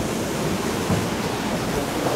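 Sea waves breaking and washing over a rocky shore, a steady rush of surf, with wind buffeting the microphone.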